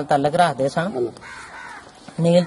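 A man speaks briefly, then a crow caws more quietly in the background about a second and a half in.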